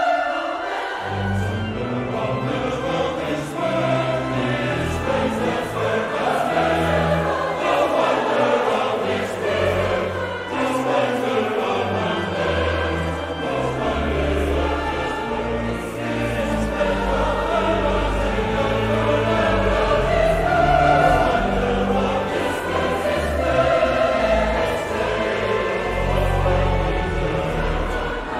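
Large mixed choir singing, accompanied by a pipe organ whose sustained low bass notes enter about a second in and move in steps beneath the voices.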